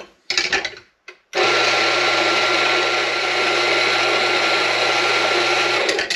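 Electric espresso grinder grinding coffee beans into a portafilter: a couple of clicks as the portafilter is seated, then a steady motor whirr with a low hum for about four and a half seconds that cuts off suddenly just before the end.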